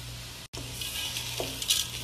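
Dry lentils, rice and pasta being stirred in a pot with a wooden spoon: a steady grainy hiss with a couple of sharper scraping strokes near the end.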